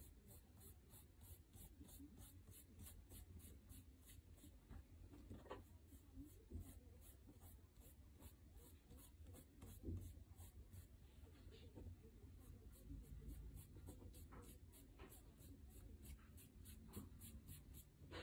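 Faint rubbing of fingertips smudging chalk across a sheet, with a couple of soft touches, otherwise near silence.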